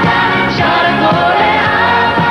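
Pop song performed live: voices singing long held notes with vibrato over a full band.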